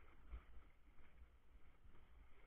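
Near silence: only a faint low rumble and a faint hiss.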